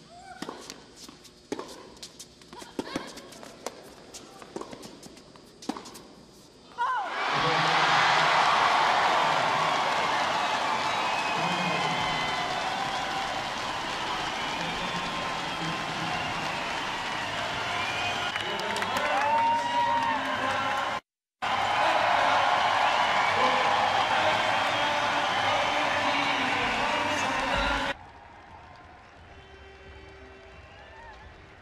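Tennis ball struck in a rally, with sharp hits every second or so. About seven seconds in, a large indoor crowd starts cheering and applauding loudly after the match-winning point. The cheering is broken once by an edit and cuts off suddenly near the end.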